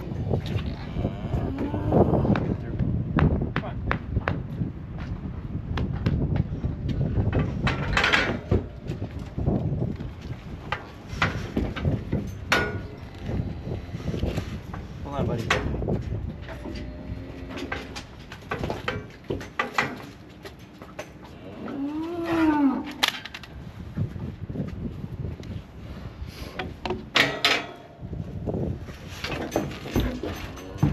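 Steers mooing, with one long moo rising and falling about two thirds of the way through, among repeated clanks and knocks from the steel cattle chute and headgate.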